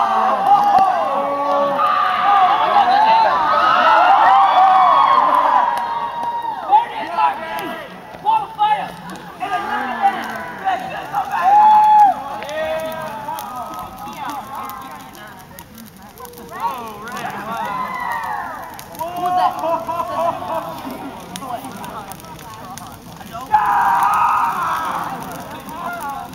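A crowd of people calling out and hollering together, many voices overlapping with rising and falling pitch. It is loudest in the first few seconds, dies down past the middle, then swells again.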